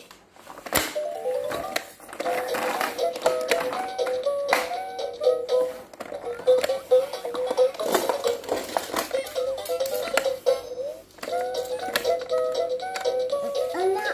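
Fisher-Price peek-a-boo toaster toy playing its electronic children's tune, a simple melody of short notes, with several sharp plastic clicks from its button and lever being pressed.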